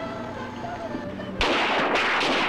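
A sudden, dense barrage of gunfire from many guns at once bursts in about one and a half seconds in and keeps going without a break.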